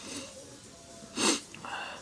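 A person's short breath close to the microphone, a little over a second in, over quiet room tone.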